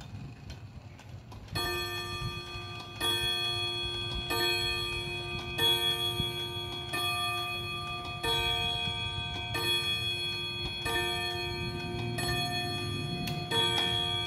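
Seikosha 14-day pendulum wall clock striking ten o'clock on its gong: ten ringing strikes about 1.3 seconds apart, starting about a second and a half in, each one still ringing when the next lands.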